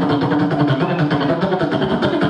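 Human beatboxing into a handheld microphone: a hummed buzzing bass tone with rapid mouth-made percussive clicks in a steady rhythm.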